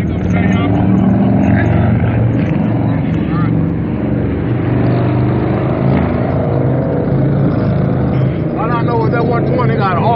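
Harley-Davidson V-twin motorcycle engines running loudly and steadily, the exhaust note wavering a little in level.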